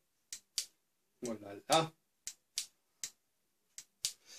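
Spring-assisted pliers of a NORMA folding multitool being squeezed and released by hand, giving a series of short, sharp metal clicks, about six in all.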